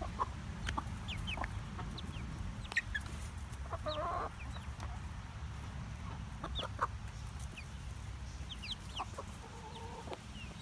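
A small flock of hens clucking, with many short high chirps scattered throughout and one longer call about four seconds in, over a low steady rumble.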